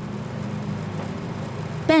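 A steady low hum over a faint hiss, with no change through the pause.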